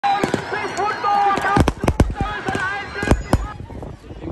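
Firecrackers going off in a rapid, irregular string of sharp bangs over excited crowd shouting, typical of a celebration of a won match; the bangs come thickest in the second half and stop about three and a half seconds in.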